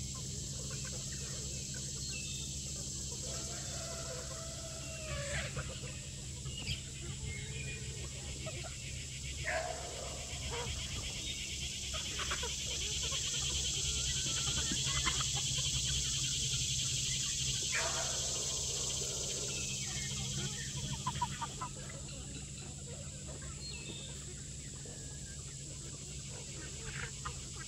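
Flock of chickens foraging, with scattered clucks and short calls. Under them runs a steady high buzz that swells louder in the middle.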